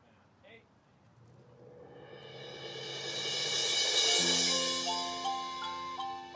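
Marching band opening: a cymbal roll swells in a long crescendo to a peak about four seconds in. There a sustained low chord enters and the wash fades under it, and short stepping mallet-percussion notes begin near the end.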